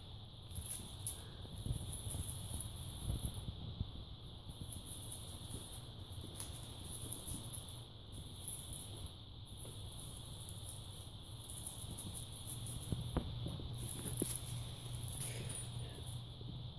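Faint scattered taps and patter of kittens' paws scampering and pouncing on a hardwood floor and rug, over a steady faint hum.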